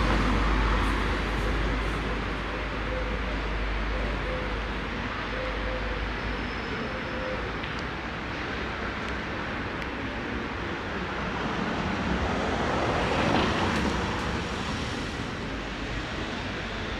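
City street traffic noise, steady, with one vehicle passing louder about thirteen seconds in. A low wind rumble on the microphone during the first several seconds.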